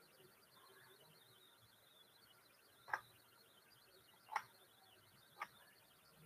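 Near silence with faint, rapid high chirping throughout, broken by three brief sharp clicks about three, four and a half, and five and a half seconds in.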